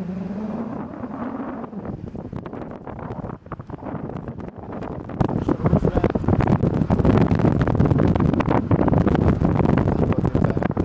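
Wind buffeting a phone's microphone inside a moving car, over road noise; it grows louder about five seconds in.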